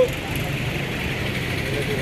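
Steady, even rumble of outdoor street background noise with faint voices, between the bursts of a speaker's amplified speech.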